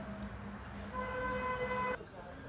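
A vehicle horn sounding one steady note for about a second, cut off abruptly, over a low steady hum.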